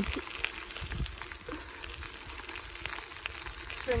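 Folding bicycle rolling along an unpaved track: a steady crackling of the tyres with wind rumbling on the microphone.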